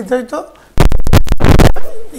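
Clothing or a hand rubbing against a clip-on lapel microphone: a very loud, rough scraping rustle lasting about a second, starting under a second in.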